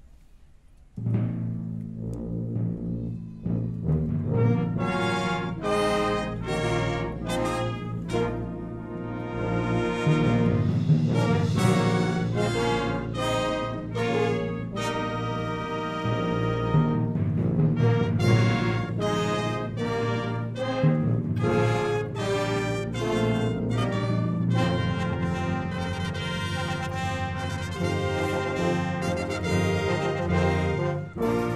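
Symphonic wind band starting a piece: after a second of quiet the full band comes in suddenly and loudly, and plays on with brass and woodwinds.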